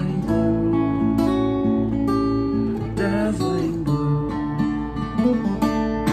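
Steel-string acoustic guitar played solo, picked and strummed chords changing about every second.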